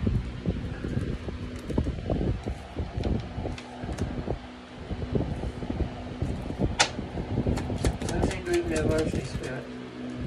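A deck of tarot cards being shuffled and handled over a wooden table: a fast, irregular patter of soft card slaps and flicks, with one sharp snap about seven seconds in and a run of crisper flicks after it. A steady low hum runs beneath.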